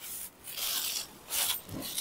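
A silk saree rustling in a few short bursts as it is lifted and shaken open.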